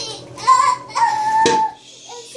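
A young girl's excited, high-pitched squeals: a short one, then a longer held one.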